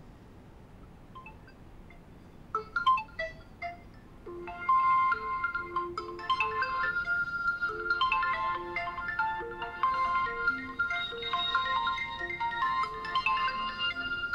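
A marimba-style phone ringtone playing. It starts with a few scattered notes about two and a half seconds in, then grows into a louder, busy run of bright mallet notes from about four and a half seconds on.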